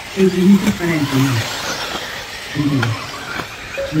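A man's voice speaking in two short bursts, over the steady noise of radio-controlled off-road buggies racing on a dirt track.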